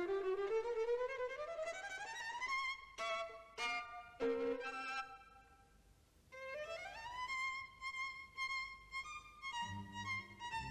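A violin on the cartoon's soundtrack, playing a slow upward slide, then a few short notes. It breaks off briefly about five and a half seconds in, then slides up again to a held high note followed by more short notes.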